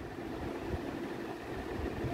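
Steady background hiss with a faint low hum running under it, like a fan or other room noise.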